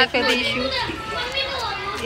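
Children's voices shouting and calling out while they play, one high voice after another with few breaks.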